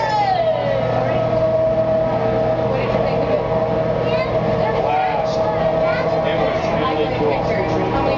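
People's voices over a steady mechanical hum that holds a constant tone, with a short falling whine at the very start.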